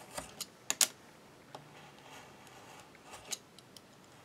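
Utility knife cutting paper along a metal ruler on a cutting mat: a few sharp clicks and scrapes of blade and ruler, loudest just under a second in, with a smaller cluster a little past three seconds.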